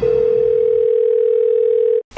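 A steady electronic beep-like tone at one pitch, held for about two seconds and cut off abruptly at the end.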